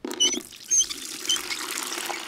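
Water running from an outside tap into a metal bucket, filling it steadily, with a few short high plinks in the first second or so.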